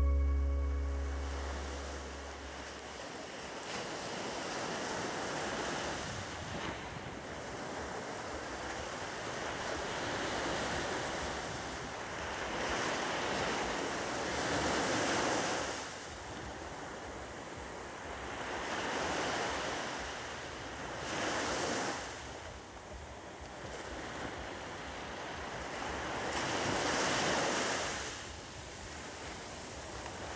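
North Sea surf breaking on a sandy beach, the wash swelling and falling away with each wave every four to five seconds. The last low notes of a music track fade out in the first few seconds.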